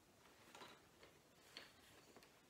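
A few faint clicks and taps, about four in all, as small wooden figures are handled and set down.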